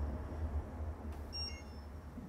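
A low hum slowly fading, with a brief faint high beep about one and a half seconds in.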